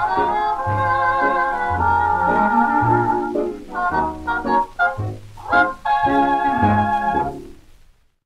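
A 1930s dance orchestra playing the instrumental close of a sweet-band foxtrot: held chords with a light waver over short, even bass notes. It ends on a final sustained chord that fades out just before the end.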